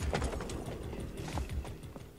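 Film sound effects of a mounted charge: fast, uneven thumping of running hooves with metal clatter and clanking. It stops just before the end.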